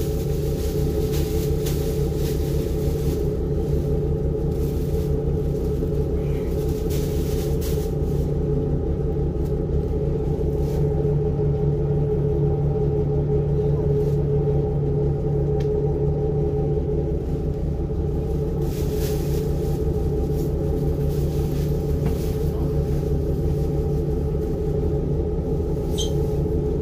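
Passenger-cabin view of a diesel railcar's engine running with a steady low drone and hum as the train pulls slowly out of the station.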